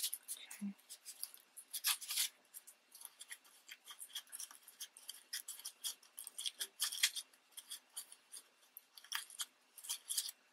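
Crinkled momigami paper crackling and rustling as fingers press and pinch the layers of a glued paper flower into shape: a quick, irregular run of faint crinkles, loudest about two seconds in.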